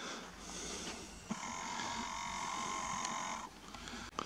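Distant quad bike engine holding steady revs for about two seconds in the middle, a faint even buzz that starts and stops cleanly.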